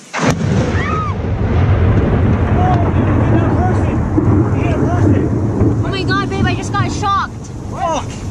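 A close lightning strike: a sudden sharp crack just after the start, then loud thunder rumbling on without a break. Voices cry out several times near the end.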